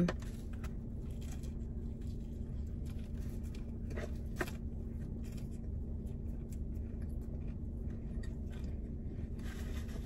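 Soft chewing with small clicks and scrapes as a sandwich and a takeout clamshell box are handled, two of them a little sharper about four seconds in. Underneath is the steady low hum of a car cabin.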